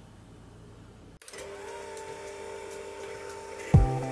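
Electric hand mixer starting about a second in and running steadily on high speed, beating whole eggs in a glass bowl; near the end a louder knock comes in, with a deeper hum under the whine.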